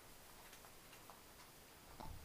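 Near silence, with a few faint ticks of a spoon against the inside of an aluminium pressure cooker as a thick masala is stirred.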